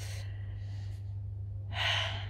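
A woman's breathy exhales, a soft one at the start and a louder puff near the end, sighing at the heat, over a steady low hum.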